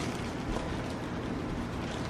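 Clear plastic zip-top sandwich bag rustling and crinkling as a small fabric decoration is worked into it by hand.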